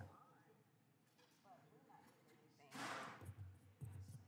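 Near silence: quiet room tone with faint, distant voices, and a brief soft hiss close to the microphone about three seconds in.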